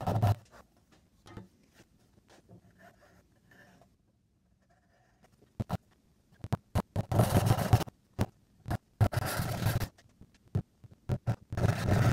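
A dovetail saw cutting soft maple, after several quiet seconds: two rasping strokes about a second long each, with scattered sharp clicks of the saw and wood around them.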